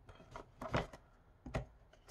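A few soft clicks and light scrapes as a deck of plastic tarot cards is pushed into its cardboard tuck box.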